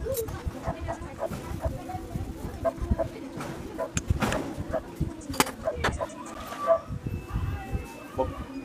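Scattered light metallic clicks and clinks of motorcycle clutch plates and parts being handled in the clutch basket, the sharpest a little past halfway, with voices in the background.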